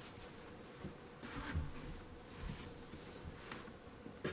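Faint rustling of clothing and a plastic bag liner as folded clothes are packed into a cardboard shipping box, with a sharp tick near the end, over a faint steady hum.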